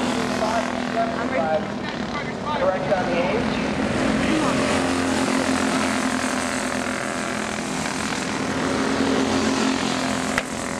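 Engines of several racing go-karts running together in a steady, high drone as the karts lap a dirt oval, with voices heard over them in the first few seconds.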